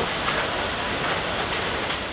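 Steady factory machinery noise in a cartridge-loading works, an even din with no distinct tones, easing slightly near the end.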